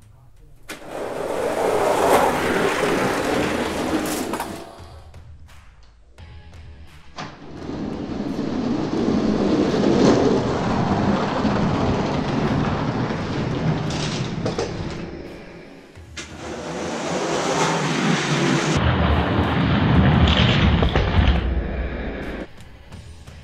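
Die-cast toy monster trucks rolling down an orange plastic Hot Wheels track: a rumbling rush of plastic wheels on plastic that swells and fades three times.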